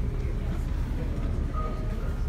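Steady low rumble of a passenger ferry's engines, heard from inside the ship, with faint voices.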